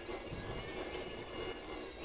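E-bike rolling along a paved path: a steady, quiet noise of tyres and passing air, with a faint steady high whine.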